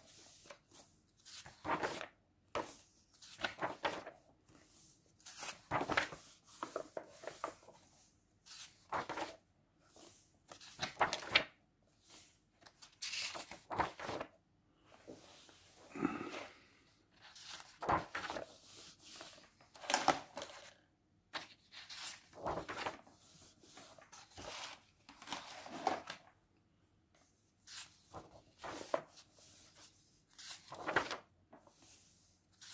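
Paper pages of a large bound notebook being turned and smoothed flat by hand: a run of short rustling swishes, one every second or two, with brief pauses between.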